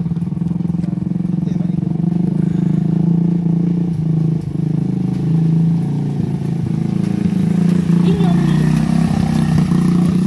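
Engine of a homemade open-frame buggy running steadily as it drives up and past, with voices near the end.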